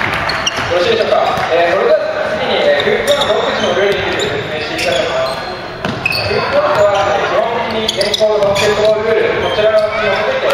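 A basketball bouncing on a hardwood gym floor during play, with players' voices ringing in the large hall.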